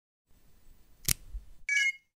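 Intro logo sound effect: a sharp hit about a second in, then a short bright chime near the end that cuts off suddenly.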